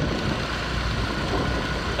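Motorbike engine running during a ride through street traffic, a steady rumble with no breaks.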